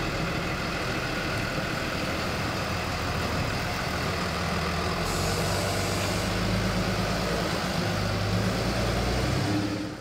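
Delivery truck engine running as the truck manoeuvres to turn around in a driveway. The engine note grows a little louder in the second half.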